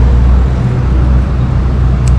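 Steady low rumble of a motor vehicle engine running close by, even and unchanging.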